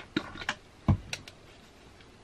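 A quick run of light clicks and taps, like small objects being handled, with one heavier thump a little under a second in.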